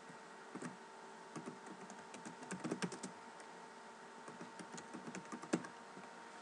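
Computer keyboard typing: irregular runs of key clicks with short pauses between them as a short phrase is typed.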